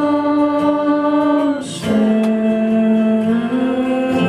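A man singing long held notes live, with acoustic guitar under the voice. The note breaks off about two seconds in and comes back lower.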